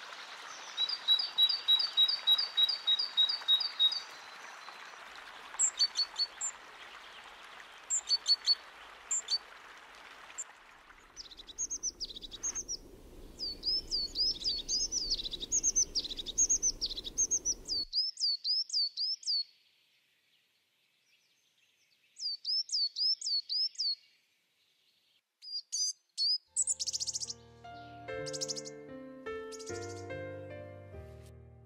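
Wild songbirds singing: runs of high, quick chirping notes repeated in series, the first a fast even trill. For the first ten seconds the chirps sit over a steady rushing noise, and near the end they give way to soft piano music.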